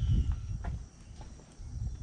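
Footsteps on an asphalt driveway with low rumbling thumps on the microphone, loudest at the start and again near the end, and a few faint clicks in between.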